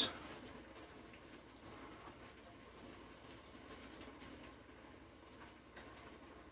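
Faint rustling and small soft handling sounds of a silicone baking mat and gloved hands rolling up a sheet of candy dough, over a faint steady hiss from a pressure canner.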